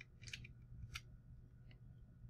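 Near silence: room tone with three faint clicks of a computer mouse, spread over the two seconds.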